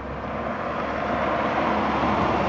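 A Toyota RAV4 approaching and passing close by, its tyre and engine noise growing steadily louder to a peak at the end.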